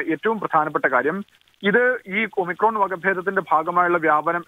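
Speech only: one person talking steadily in Malayalam, with a brief pause just over a second in.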